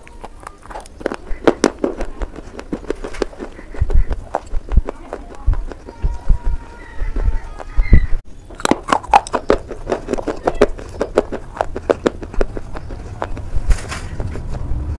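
Close-miked crunching and chewing of brittle grey slate pieces: a dense run of sharp, irregular cracks, with heavier low thuds in the middle and a brief break about eight seconds in.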